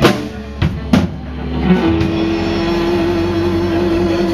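Live blues-rock band playing: a few loud drum-kit hits in the first second, then one long, steady note held over the bass and drums.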